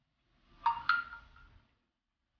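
Smartphone message notification tone: two short chime notes, the second higher and ringing on briefly, signalling an incoming SMS.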